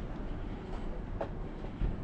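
Steady low rumble outdoors, with a brief squeak a little after a second in and a short low thump near the end.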